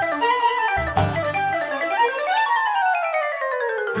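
Instrumental background music: a melody that climbs, then falls in a long descending run through the second half, with the bass dropping out about a second in.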